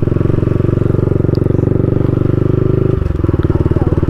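Modified Yamaha MT-15's single-cylinder engine running at steady throttle, heard from the rider's seat. About three seconds in the throttle eases and the engine note drops.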